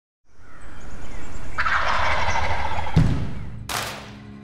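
Wild turkey gobbling once, about a second and a half in, over a steady low rumble. A thud follows about three seconds in, and a short burst of noise near the end.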